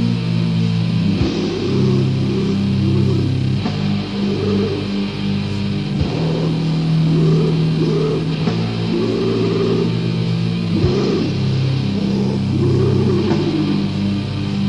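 Old-school death metal from a 1990 demo cassette: distorted electric guitars and bass holding heavy low chords that change every second or two, with drums and a sharp accent hit about every five seconds.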